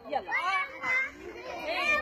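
A group of young children's voices calling out together, high-pitched and overlapping.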